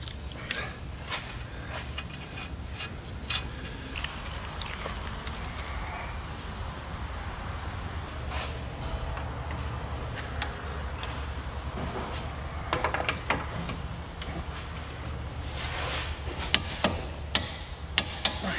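Scattered clicks and knocks of tools and metal parts being handled during suspension reassembly, over a steady low hum; a quicker run of sharper clicks comes near the end.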